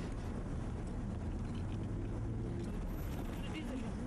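Street ambience: a steady low rumble of road traffic with faint voices in the background.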